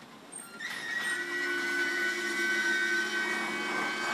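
A train running on rails: a steady rushing noise with high sustained metallic squealing tones, fading in during the first second.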